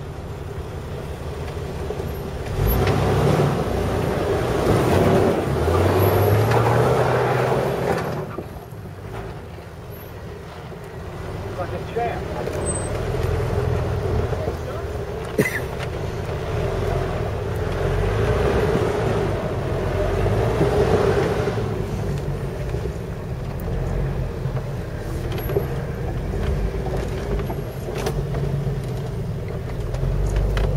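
Jeep engine pulling at low speed on a rough dirt trail, revving up and easing off twice, once about two seconds in and again around the middle.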